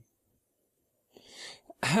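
A second of silence, then a person's short, soft breath drawn in through the mouth or nose about a second in, just before the voice starts again near the end.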